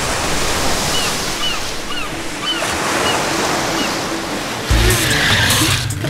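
Ocean surf washing steadily, with a row of short high calls about twice a second early on. Music comes in low near the end.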